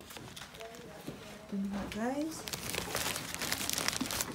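Plastic carrier bag rustling and crinkling faintly as it is carried, with a short voice sound about halfway through.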